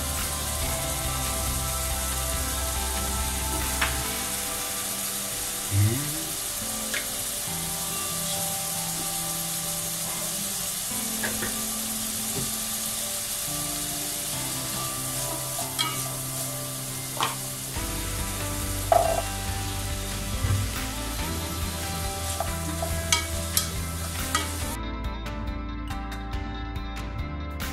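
Diced carrots and other mixed vegetables frying in butter in a nonstick pan: a steady sizzle, with a few sharp clicks scattered through it.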